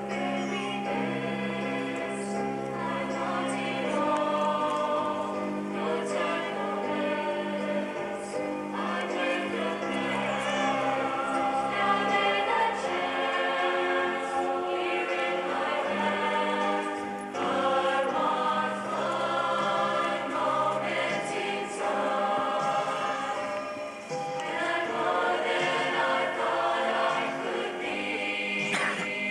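A choir of graduating students singing a song together, with held notes that change every second or so.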